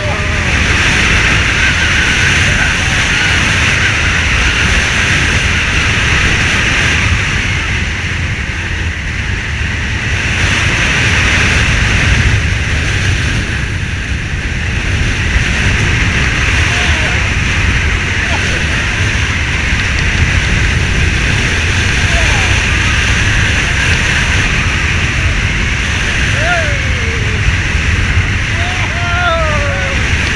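Wind rushing over the microphone and the Intamin hyper coaster train running at speed on its steel track, a steady loud roar with a low rumble. A few short rider whoops and shouts come near the end.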